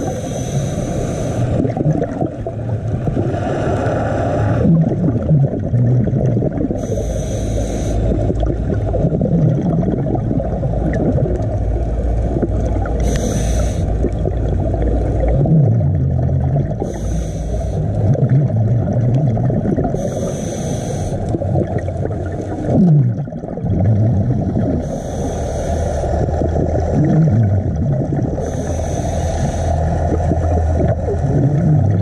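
Scuba regulator breathing picked up underwater: a short hiss of inhalation every few seconds, over a steady muffled rumble of bubbles and water against the camera housing.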